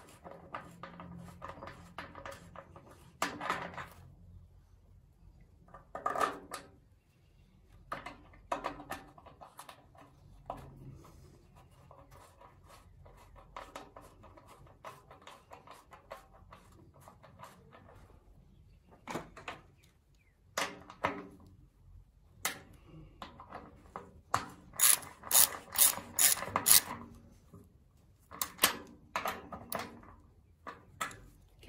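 Hand ratchet clicking in short runs as a small bolt is tightened down into a chrome instrument housing, with scattered metallic clinks from handling the tool and parts. The loudest run of sharp ratchet clicks comes about three quarters of the way through.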